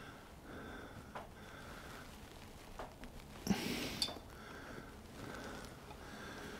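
Quiet handling of metal tools on a dividing head's collet chuck: a few faint clicks, then a brief scrape between two clicks about three and a half seconds in, over faint breathing.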